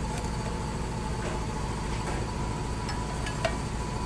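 Steady hum of workshop machinery with a faint high whine, and a few light metallic clicks as a wrench tightens the cylinder head's clamping bolts on the surfacing fixture.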